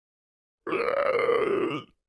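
A person voicing a zombie groan: one guttural call a little over a second long that rises and then falls in pitch and stops abruptly.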